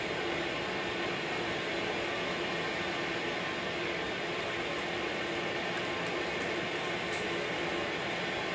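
Film soundtrack of steam blasting from an industrial plant's ventilation shaft: a steady hiss of rushing steam with a faint steady hum beneath, played through a room's loudspeakers.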